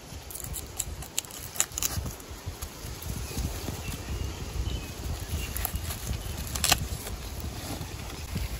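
Footsteps crunching through dry leaf litter, with scattered sharp cracks (the loudest about two-thirds of the way in), over a steady low rumble.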